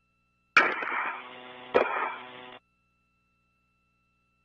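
Spacewalk radio channel keying open with a sharp click and carrying a steady buzzing hum with no words, with a second click partway through. It cuts off abruptly after about two seconds.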